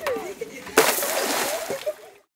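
A heavy lifebuoy thrown by hand hits the water about three-quarters of a second in, with a loud splash that lasts about a second before fading.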